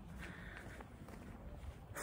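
Faint footsteps of a person walking on a dirt path, with a low rumble underneath.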